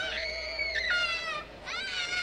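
A child screaming from the film soundtrack: one long, high scream that breaks off about a second in, and another starting near the end.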